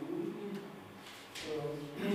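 A man's voice speaking in short phrases, with a brief pause in the middle.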